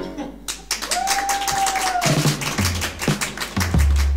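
Applause breaks out at the end of a song, with a single held tone of about a second sounding over it. Past halfway a short music sting with a deep bass line comes in and grows louder near the end.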